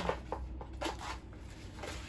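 Small cardboard box being handled and its lid flap pried open: a few short scrapes and taps of paperboard, mostly in the first second.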